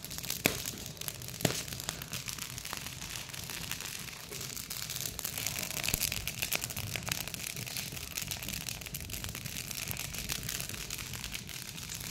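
Wood fire crackling in a brick fire pit: dense, irregular small crackles and pops, with two sharper pops in the first two seconds.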